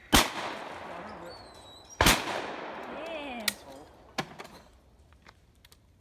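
Two shotgun shots from a break-action shotgun, about two seconds apart, each ringing out and fading slowly. A couple of sharp clicks follow a little later.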